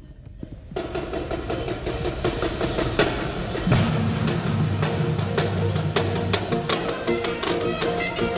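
High school band with brass, saxophones and drums starting to play. It starts with drum strikes about a second in, and lower notes join about halfway through.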